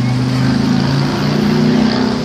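City traffic noise dominated by the steady low drone of a large vehicle engine running close by, its pitch shifting slightly.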